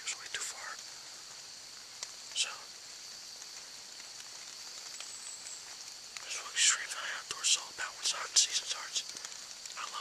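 A man whispering in short bursts, a few words near the start, one at about two and a half seconds and a longer run in the second half, over a steady high hiss.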